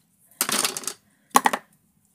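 Twine being handled and pulled from its spool: a short rustle about half a second in, then a brief light clatter of clicks about a second and a half in.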